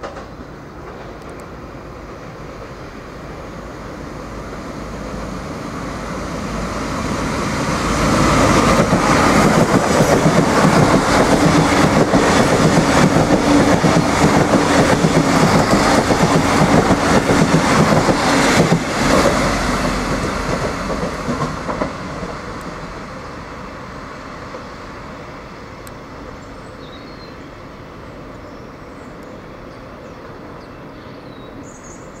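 Irish Rail 29000 class diesel multiple unit passing through a station without stopping. The diesel engine note and the wheels clicking over the track swell to a loud peak over several seconds, then fade away as it goes by.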